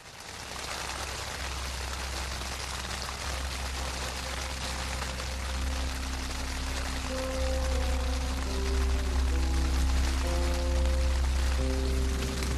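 Steady heavy rain falling. From about halfway in, slow held music notes come in over it and grow.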